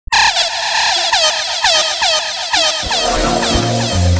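Sound-system style DJ effect at the head of a riddim mix: a sharp tone that sweeps down in pitch, fired over and over about four times a second. About three seconds in, the bass line and beat of the riddim come in underneath.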